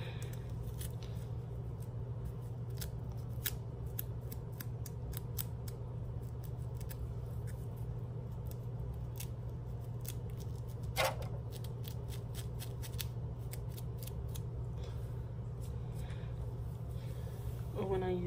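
Teeth of a small plastic comb scratching a dry, flaking scalp between braids: a rapid run of fine scrapes and clicks, with one louder stroke about eleven seconds in.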